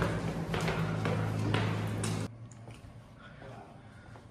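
Footsteps climbing a stairwell, about two steps a second, over a steady low hum. Both stop abruptly about two seconds in, leaving quiet room tone.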